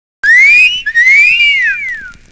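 A loud two-part wolf whistle: a short rising note, then a longer note that rises and falls away.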